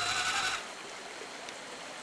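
Whine of an RC truck's brushless electric motor, wavering in pitch, cut off about half a second in. A quieter, steady rush of stream water continues after it.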